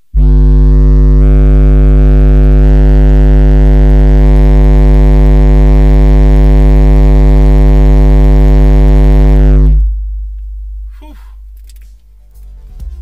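A 50 Hz test tone from a single AD2206 6.5-inch subwoofer in a 3D-printed PLA bass tube, played at full power inside a car cabin as an SPL test. It comes on suddenly as a deep, buzzy drone and holds steady for about ten seconds, reaching about 136 dB on the meter, then drops away.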